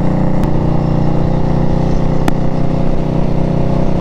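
2018 Indian Scout Bobber's V-twin engine with a Vance & Hines exhaust running steadily at highway cruising speed, a continuous loud drone.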